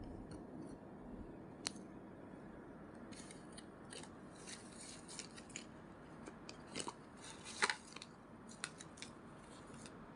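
Stiff cardboard flash cards being handled by a toddler: faint rustling, scraping and small taps as the cards slide against each other, with a sharp click a little under two seconds in and a busier run of scrapes and taps in the second half.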